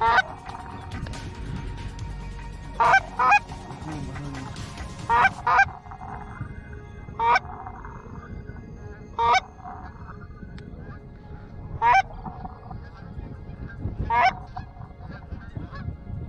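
Canada goose honks, loud and close, coming singly or in quick pairs every two seconds or so, with fainter honking in between.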